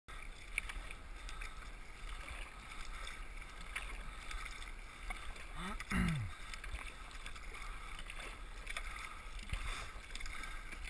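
A sea kayak being paddled: the paddle blades dip into choppy water and small waves splash against the hull, over a low rumble of wind on the microphone. About halfway through, a short sound rises and then slides down in pitch, the loudest thing here.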